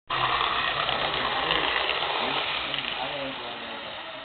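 Model train's electric locomotive and cars running along the track close by, a loud steady rattle and whir that fades from about three seconds in as the train moves away.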